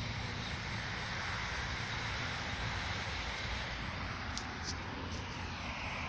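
Steady rumbling, rushing noise of a moving vehicle, with a couple of faint clicks a little past the middle.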